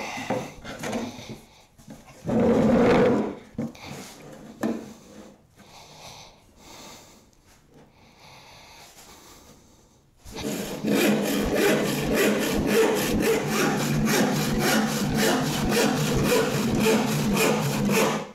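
Rip hand saw cutting a wooden board along the grain. After a brief loud burst about two seconds in and a quieter spell, the saw settles into a steady, even rhythm of strokes from about ten seconds in.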